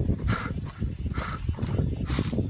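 Short animal calls, about one a second, over a steady low rumbling noise.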